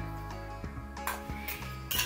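Background music, with a few soft clinks of a metal spoon stirring damp sand in a glass bowl.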